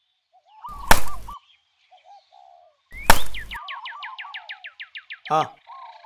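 Birds calling: short, repeated, hooked chirps, then from about three seconds in a fast run of about fourteen falling whistles. Two loud, brief bursts of noise cut in, about a second in and again about three seconds in.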